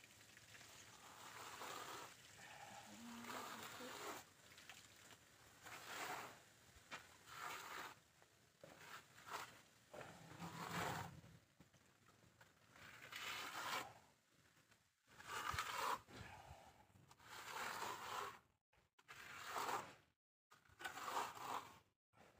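Faint scraping strokes of a plastering trowel spreading and smoothing plaster on a wall, a stroke every second or two.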